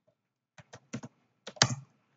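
Computer keyboard being typed on: a quick run of about six keystrokes starting about half a second in, the loudest near the end.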